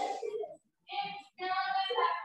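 A child's high-pitched voice in short, drawn-out phrases with brief gaps.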